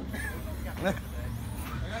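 A short spoken syllable over a steady low background hum.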